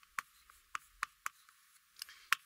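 Chalk clicking and tapping against a chalkboard as characters are written: about four short, sharp taps, faint.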